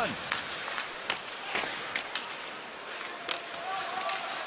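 Ice hockey arena ambience during play: a steady crowd murmur with scattered sharp clicks and knocks of sticks on the puck and skates on the ice.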